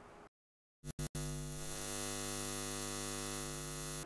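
Steady electrical mains hum, a buzz with many overtones, starting about a second in after a brief dead silence and two short clicks.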